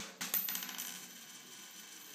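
Logo transition sound effect: a bright clink about a quarter second in, followed by a high ringing shimmer that slowly fades.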